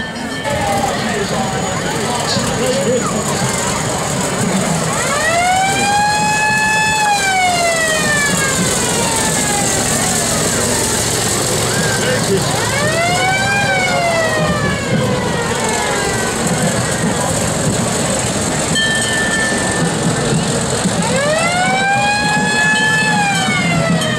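Fire truck siren wailing in three slow cycles, each rising in pitch, holding, then falling over several seconds, over steady crowd and street noise.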